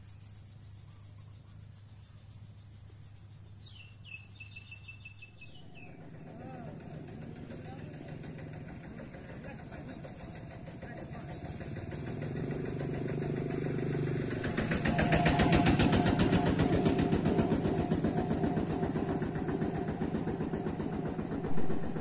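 A small motor engine running with a fast, even putter. It grows louder through the first half and is loudest from about two-thirds of the way in. A steady high insect drone sounds throughout.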